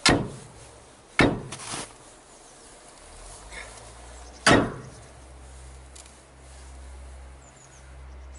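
Long iron pry bar jabbed and levered against the base of a corrugated-metal shed wall: three sharp knocks, the second followed by a fainter one, the last a few seconds later.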